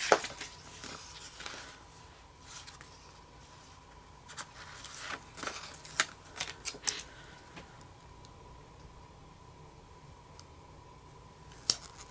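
Paper sticker sheets and planner pages being handled: soft rustling with sharp clicks and taps as stickers are peeled off and pressed down, the loudest click right at the start and a cluster of them about five to seven seconds in.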